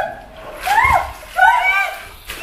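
Pool water splashing as a swimmer strokes on her back, with a high-pitched voice calling out twice over it.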